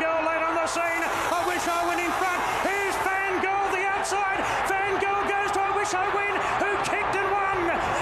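Race caller's fast, high-pitched commentary, called without pause as the horses run to the finish line, with a few sharp clicks.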